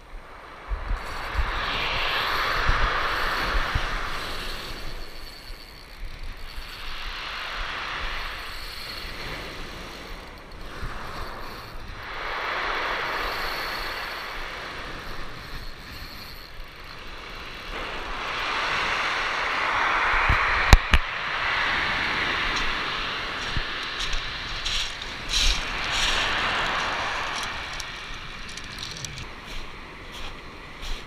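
Surf breaking and washing up a pebble beach, the hiss swelling and fading with each wave every several seconds, with some wind rumble on the microphone. A single sharp click comes about two-thirds of the way through.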